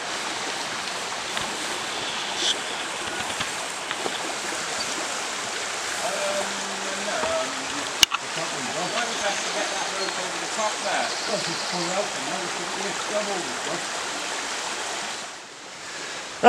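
Shallow river running over rocks, a steady rush of water. Faint, distant men's voices come and go through the middle. A single sharp click sounds halfway through.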